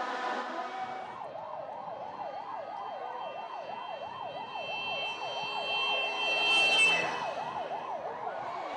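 Motorcade escort siren in a fast yelp, its pitch rising and falling about four times a second, starting about a second in.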